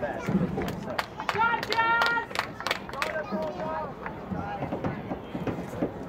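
Distant voices shouting across an outdoor soccer game, with one loud drawn-out yell about a second and a half in. Scattered sharp clicks fall through the first half.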